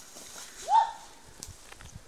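A person's short, high yelp that rises in pitch, about three-quarters of a second in, as she steps into icy creek water. A few faint knocks from her steps in the shallow water follow near the end.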